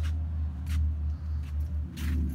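Low, unsteady rumble of wind buffeting a phone's microphone outdoors, with a faint click or two.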